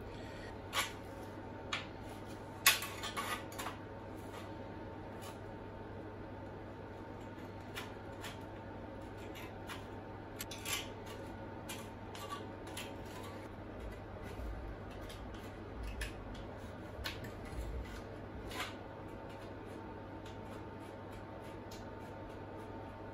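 Aviation tin snips cutting a thin strip off a sheet-steel repair panel: scattered sharp snips and clicks as the blades close through the metal, with a quick run of cuts about three seconds in. A faint steady hum runs underneath.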